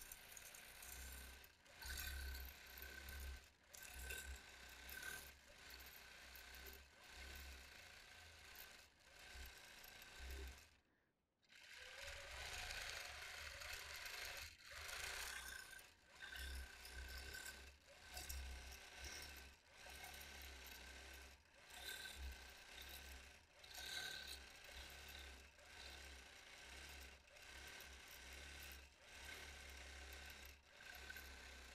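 Longarm quilting machine stitching, a faint steady mechanical chatter over a low hum that swells and eases unevenly as the machine is moved. It stops for a moment about eleven seconds in, then carries on.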